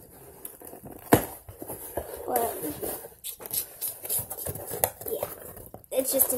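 Empty cardboard shipping box being handled and turned over by hand: scrapes and rustles with several knocks, the sharpest about a second in.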